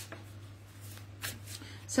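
Tarot cards being handled, with a few soft, brief rustles over a steady low hum.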